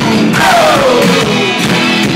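Live rock band of electric guitar, bass and drums playing loudly, with one long note gliding down in pitch from about half a second in.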